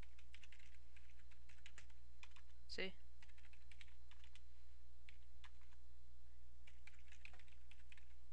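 Typing on a computer keyboard: quick runs of key clicks separated by short pauses, over a steady low hum.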